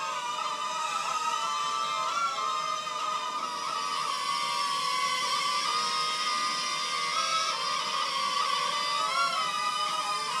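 Whine of the JJRC H70 mini quadcopter's four brushed motors in flight: several close steady pitches that shift together with throttle changes, at about two and nine seconds in.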